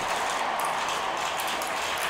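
Marbles rolling along a marble-race track, a steady, even rolling noise.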